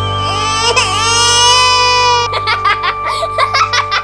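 A long, wavering crying wail over background music, then a run of short quick notes in the music from about halfway through.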